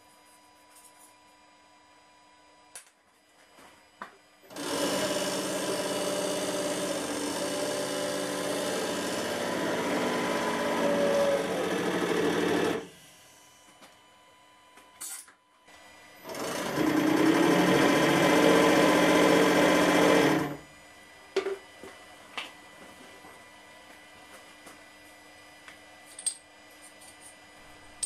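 Hydraulic press pump motor running twice: a steady whirring for about eight seconds as the ram comes down and squeezes a heated block of compacted aluminium foil, then again for about four seconds as the ram goes back up. A few faint clicks fall in the quiet stretches.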